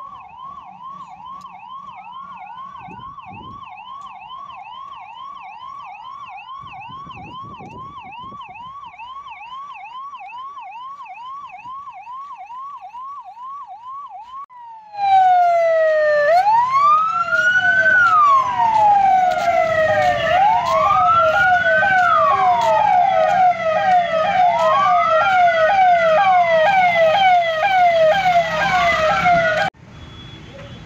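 Police vehicle sirens. For the first half a single siren yelps in a fast, even up-and-down sweep. About halfway through it jumps much louder, and a slow rising-and-falling wail sounds over the fast yelp, as two sirens sound together; this cuts off just before the end.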